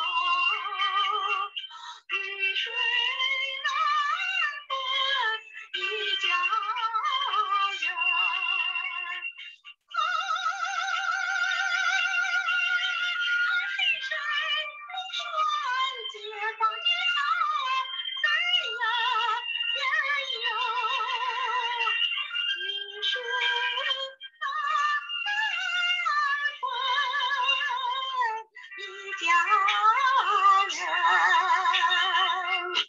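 A woman singing a song with vibrato over backing music, heard through an online video-call link with thin sound that lacks bass. About ten seconds in she holds one long note.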